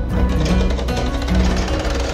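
A sewing machine clattering fast and evenly, under background music with a bass line.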